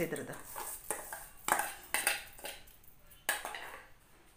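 A metal spoon knocking and scraping against a stainless-steel bowl as roasted seeds are tipped into a steel mixer-grinder jar: a series of sharp metallic clinks with a short ring, the loudest about one and a half and three and a quarter seconds in.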